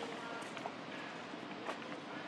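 Outdoor background ambience: faint, indistinct distant voices, with a few small scattered clicks and rustles.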